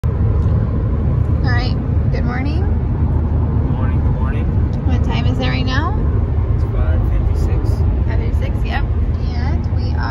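Steady low rumble of a car, heard from inside the cabin, with a voice talking over it in short stretches.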